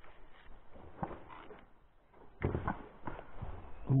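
Handling noise from fishing gear being moved about in an inflatable boat: a few soft knocks and rustles, the loudest cluster about two and a half seconds in.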